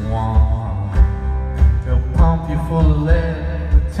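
Live rock band playing through a hall PA: acoustic and electric guitars over drums, with a pitched melody line, recorded from the audience.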